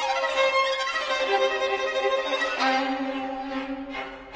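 Recorded string music led by violin: sustained bowed notes over string accompaniment, with a new lower held note entering about two and a half seconds in.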